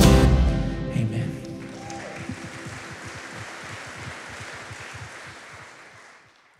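A worship band's last chord, with acoustic guitar, rings out and dies away in the first second or so. It gives way to a congregation clapping, which fades out near the end.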